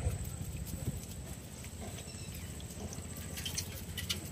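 Light clicks and rustles of a woven bamboo fish trap being untied and handled, with faint water dripping, over a low steady rumble.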